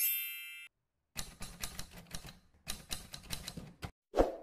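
A bright chime rings and fades within the first second, then two runs of rapid typewriter-style key clicks follow over the next three seconds, with a brief pause between them: sound effects for text typing onto the screen.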